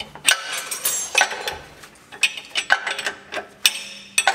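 Irregular sharp metallic clicks and clanks, a few each second, from tools and hands working at the propeller shaft's flange and CV joint under a 4x4 van.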